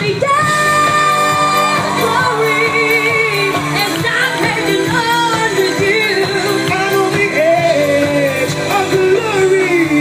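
Live pop music with a singer's voice carrying held, wavering notes over the band.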